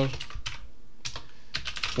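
Typing on a computer keyboard: two quick runs of keystrokes with a short pause between them a little over half a second in.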